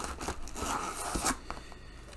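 Paper rustling and tearing as it is handled and pulled open by hand, with a few light knocks. It dies down after about a second and a half.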